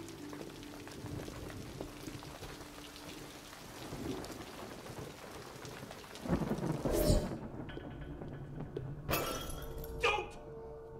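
Steady rain hissing, with a loud low rumble of thunder a little after six seconds in; the rain sound cuts away suddenly a moment later, and a second loud crash comes about a second before the end.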